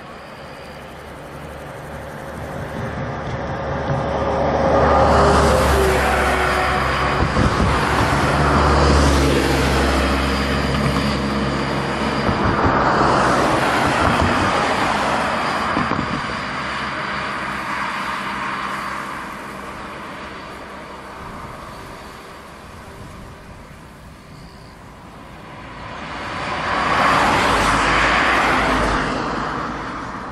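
Road traffic: cars passing close by one after another, each swelling and fading over a few seconds, over a low engine hum. The loudest passes come about five, nine and thirteen seconds in, with another near the end.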